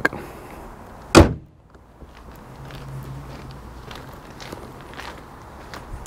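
Car bonnet pushed down and slammed shut with one loud bang about a second in, followed by faint footsteps.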